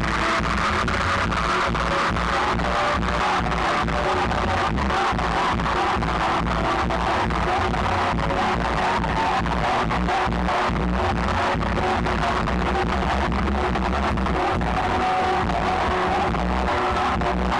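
Live band music with a steady, fast beat at concert volume.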